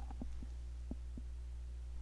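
Low, steady electrical hum in the recording with a few faint, soft ticks scattered through it.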